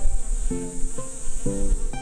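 Honeybees buzzing around the hives as a steady, high-pitched hum, under background music of plucked notes played about twice a second.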